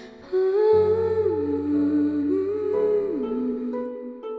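Slow film-score music: a wordless melody that slides smoothly down between long held notes, over a low sustained bass note that comes in just under a second in.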